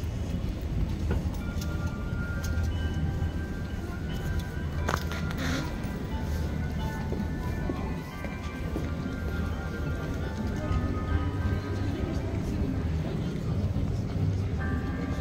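Bells ringing out a Christmas carol tune, their notes ringing on and overlapping, over the hubbub and low rumble of a busy city street.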